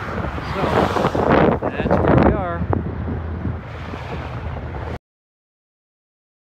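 Wind buffeting the microphone and highway traffic rushing past the roadside, swelling loudest between about one and two and a half seconds in. The sound cuts off suddenly near the end.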